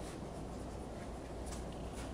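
Dry-erase marker drawing on a whiteboard, a few faint scrapes and squeaks of the tip, over a steady low room hum.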